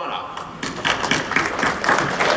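Scattered clapping over indistinct crowd voices.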